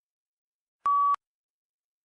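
A single short electronic beep, one steady tone lasting about a third of a second, about a second in: the test software's cue that answer recording has begun.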